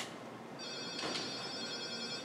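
A steady, high-pitched electronic tone made of several pitches stacked together. It starts a little over half a second in and holds to the end, over the quiet of the room.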